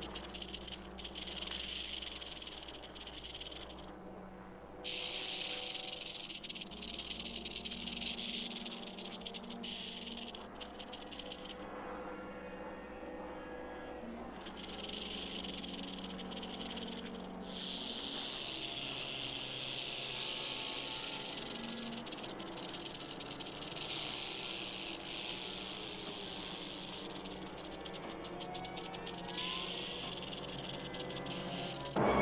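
Rattlesnake rattling its tail: a dry, high buzz that runs in long spells and stops briefly a few times.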